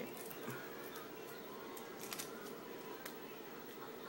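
Faint scattered clicks and handling noises as a lipstick is opened, its cap pulled off and the tube handled.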